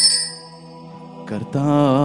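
Rapid ringing of small altar bells that stops just after the start. After a short lull over a faint sustained keyboard drone, a voice begins chanting the liturgical melody about a second and a half in.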